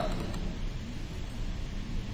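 Steady low background rumble and hiss of the room and microphone, with no distinct events.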